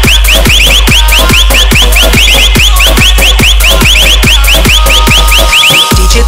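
Hard electronic dance remix: a kick drum at about two beats a second over a heavy sub-bass, with a fast string of short rising synth chirps above it. The bass drops out briefly near the end, then comes back.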